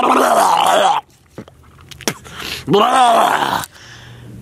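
A man making two long, wobbling nonsense noises with his voice, his face pushed into a shrub. The first stops about a second in, and the second comes near three seconds in.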